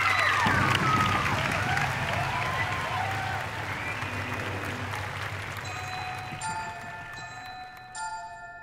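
Audience applause with some voices over it, dying away; about six seconds in, the chiming, bell-like notes of the solo's music begin.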